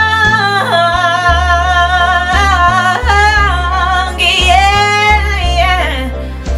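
A woman singing a long, drawn-out soul line on sustained vowels with vibrato, sliding down about a second in and climbing to a higher held note near the end, over backing music with a steady bass line.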